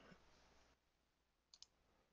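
Near silence: faint hiss that drops out under a second in, then two faint short clicks about a second and a half in.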